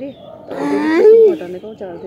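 A person's loud, drawn-out vocal cry or shout, starting about half a second in and lasting under a second, its pitch rising then falling, with quieter voices around it.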